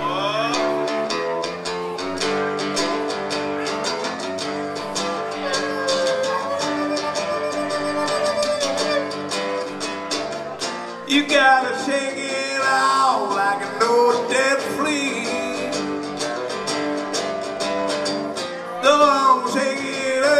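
Live blues-rock band music led by a strummed acoustic-electric guitar. A pitch-bending lead line comes in around the middle and again near the end.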